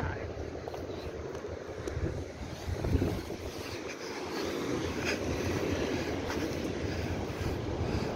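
Wind buffeting the microphone in a steady low rumble, with surf washing behind it and a couple of faint knocks.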